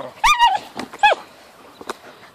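A dog giving two short, high-pitched yelps about a second apart, the first wavering in pitch.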